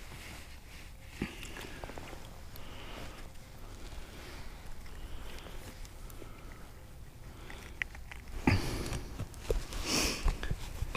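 Faint clicks and rustles of hands working a spinning rod and holding a just-caught yellow bass, with a short, loud sniff near the end.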